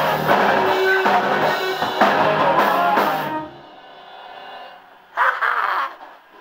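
Garage rock band playing electric guitar through Marshall amps, bass guitar, drum kit and sung vocals; the song ends about three seconds in and the last notes ring out and fade. A short loud burst of sound comes near the end.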